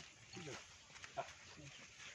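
Faint voices of people talking.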